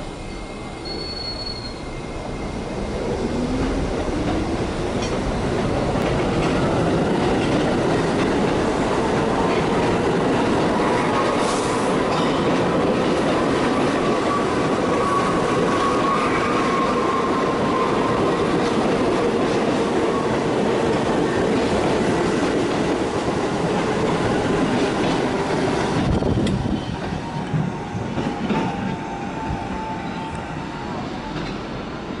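R68A subway train pulling out of a station and picking up speed past the platform. Its motor whine rises in pitch over the first few seconds, then the motors and wheels on the rails run steady and loud as the cars go by. About 26 seconds in the last car passes and the sound falls away as the train draws off.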